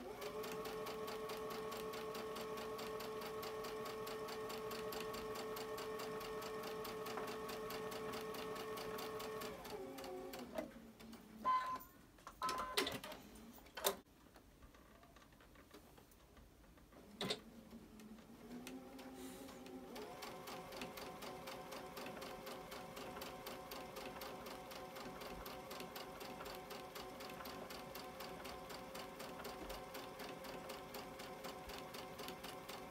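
Baby Lock Ellisimo Gold II sewing machine stitching through cotton fabric at a steady speed, with a fast even needle tick. About ten seconds in it winds down to a stop, and a few sharp clicks follow. It starts up again about two-thirds of the way through and stitches steadily on.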